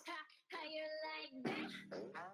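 A K-pop song with a singing voice, played over a video call's audio, briefly dropping out about half a second in.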